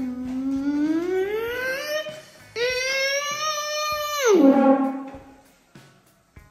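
A young boy imitating a Ferrari engine with his mouth: a buzzing note that climbs in pitch over about two seconds like an engine revving up, then after a short break a second, higher held note that falls away sharply about four seconds in.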